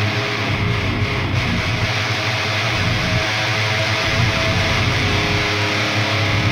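Electric guitars and bass guitar playing a deathcore track with no vocals, the drums taken out of the mix by stem separation.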